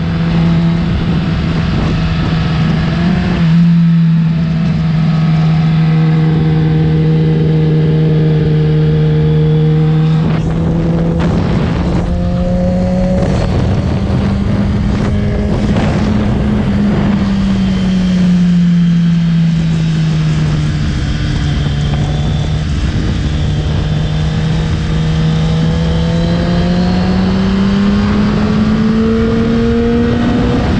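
Kawasaki sport bike's engine running under way, heard from on board: a steady engine note that rises, dips and climbs again near the end as the throttle changes, over wind rushing across the microphone, with some brief sharp crackles in the middle.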